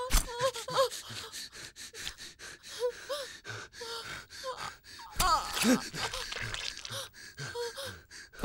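A person gasping for breath in short, strained gasps with brief groans while being choked, and a louder falling moan about five seconds in.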